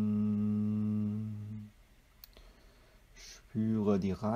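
A low man's voice chanting one long, steady held note that stops about a second and a half in. A short quiet follows with a faint click, and then a spoken voice starts near the end.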